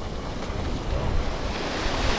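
Small surf washing onto a sandy beach, a steady hiss that swells near the end, with wind buffeting the microphone as a low rumble.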